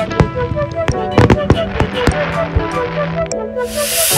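Aerial fireworks bursting, with several sharp irregular bangs and a hissing crackle that starts near the end, over music playing a steady melody.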